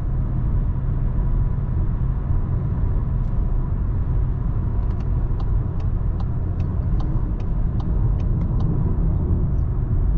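In-cabin noise of a Volkswagen Golf 8 with the 2.0 TDI four-cylinder diesel cruising on a motorway: a steady low rumble of engine, tyres and road. From about halfway to near the end, a run of faint, evenly spaced light ticks sounds, about two or three a second.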